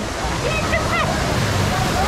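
Rushing, splashing water of a fast-current wave river ride, heard close up from a camera held at the water's surface, steady throughout, with a rider's short startled exclamations and laughter.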